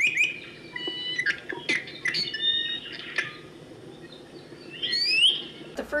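Small birds calling and singing: a run of short, clear whistled notes and chirps, then a louder slurred, sweeping whistle about five seconds in.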